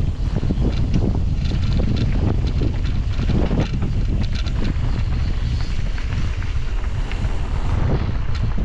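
Wind buffeting the microphone of a mountain bike descending a dirt trail, a steady low rumble, with tyres crunching over the ground and the bike rattling and clicking over bumps, most busily in the middle.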